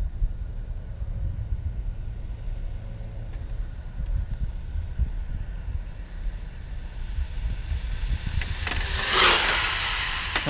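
Steady wind rumble on the microphone. About nine seconds in, a loud rushing hiss swells and fades as the Traxxas 4-Tec 3.0 RC car goes past at speed on its 2S run.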